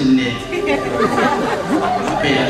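Several people speaking at once, their voices overlapping.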